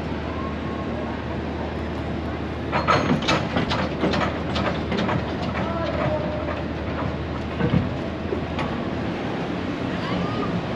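A San Francisco cable car being turned on its turntable, with a run of sharp clattering knocks from its wheels and the turntable starting about three seconds in and another thump near the end, over a steady low hum.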